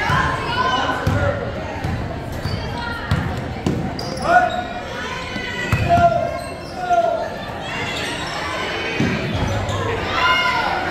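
Basketball dribbled on a hardwood gym floor, a run of uneven bounces in a large hall, with voices shouting over it.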